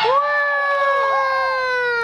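A young child's high-pitched voice holding one long drawn-out vowel, like a wail or a sung call. It rises at the onset and then slowly falls in pitch, with a fainter second child's voice briefly in the middle.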